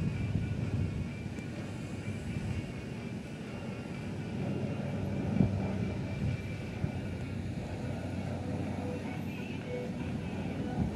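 Turboprop airliner flying overhead, its engines and propellers making a steady drone.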